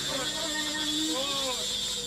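Wordless, electronically treated voice sounds gliding up and down in pitch over a steady high hiss and a low hum.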